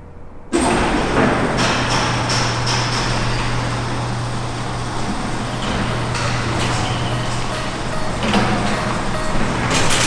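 Car running in an underground parking garage, starting suddenly about half a second in, with a steady low hum and a few sharp clicks in the first seconds, mixed with music.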